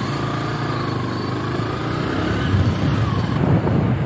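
A motorbike or scooter engine running as the two-wheeler rides off down the road, its low hum slowly getting a little louder.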